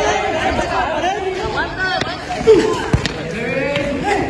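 Players and spectators shouting and calling over each other during a football game, with a few sharp knocks of the ball being kicked on concrete, the loudest about two and a half seconds in.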